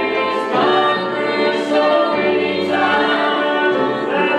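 Voices singing a gospel hymn in held notes, accompanied by keyboard and electric bass guitar.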